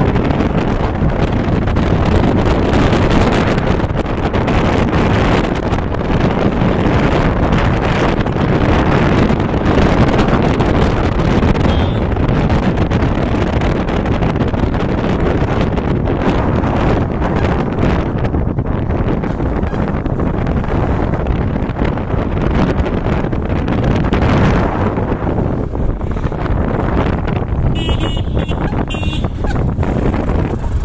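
Wind rushing over the microphone of a moving motorcycle, a steady gusty roar over the engine and tyre noise on the road.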